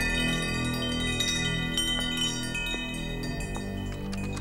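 Metal tube wind chimes set ringing, many high tones sounding together and slowly fading, over a low steady hum.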